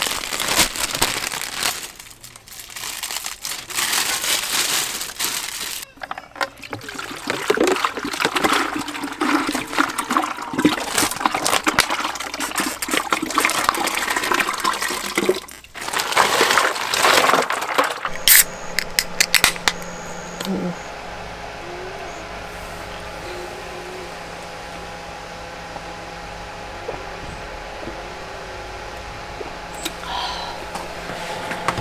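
Packaging crinkling, then ice and water emptied from a plastic bag into a Stanley insulated water jug in a long, rushing, rattling pour, loudest a little past halfway. A few sharp clicks follow, then a steadier, quieter stretch with a faint hum.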